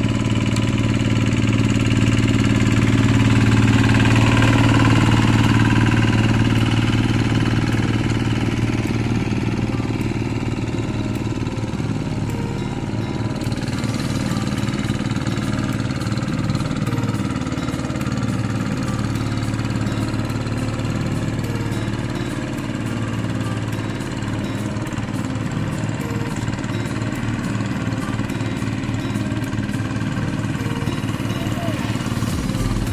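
Single-cylinder diesel engine of a two-wheel hand tractor running steadily under load as it puddles and smooths a flooded rice paddy. It is a little louder in the first several seconds.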